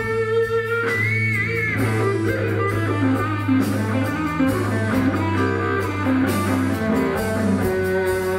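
Live blues band: a Telecaster-style electric guitar plays an instrumental lead with a bent, wavering note about a second in, over a steady bass line and drums.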